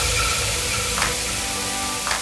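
Transition sound effect: a hiss with faint held tones, slowly dying away, with a light hit about a second in.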